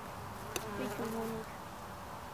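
Honeybees buzzing around open hives. About half a second in, a bee flies close by with a louder buzz that wavers in pitch for nearly a second, starting with a sharp click.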